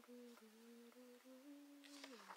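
A woman humming softly with her mouth closed, a slow line of held notes that steps gradually upward in pitch.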